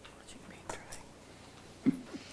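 Soft whispering voices, with one brief louder, low sound near the end.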